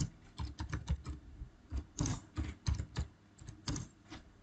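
Typing on a computer keyboard: an irregular run of quiet key clicks, several a second, with short pauses between bursts.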